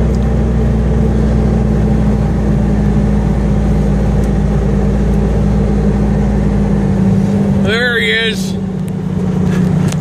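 Truck engine running steadily, heard from inside the cab as the truck rolls across the lot. The deep engine note falls away about seven seconds in, and a brief voice is heard about a second later.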